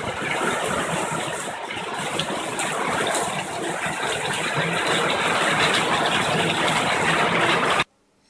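Loud, steady rush of heavily falling water spray that builds slightly and then cuts off abruptly near the end.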